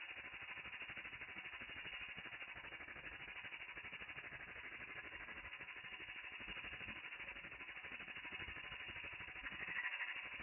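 Domestic ultrasonic cleaner running with water in its tank, the cavitation giving a faint, steady rattling hiss with a fast, even pulsing.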